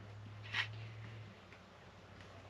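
Quiet background with a faint steady low hum that fades out partway through, and one brief faint click about half a second in.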